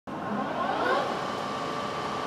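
Metal lathe running: a steady mechanical hum with a thin whine that rises in pitch over the first second, then holds steady.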